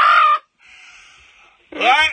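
A man's short, high-pitched laughing cry, followed by a faint breathy exhale. Near the end he starts to speak again with garbled words, "way, way".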